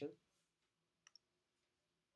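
Near silence with two faint, short clicks close together about a second in: a stylus tapping on a writing tablet while an equation label is marked.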